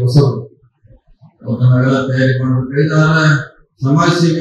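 A man speaking into a microphone: a short phrase, a pause of about a second, then a longer phrase that ends just before the next one starts.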